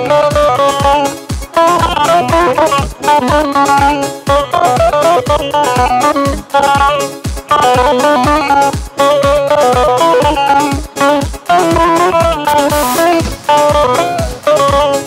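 Kurdish dance music played live: a saz (bağlama) plays a fast, busy melody over a steady drum beat of about two to three strokes a second.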